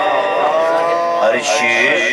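A man singing a naat (Urdu devotional song) into a microphone, without instruments. He holds a long steady note, then slides up to a higher note about two-thirds of the way in.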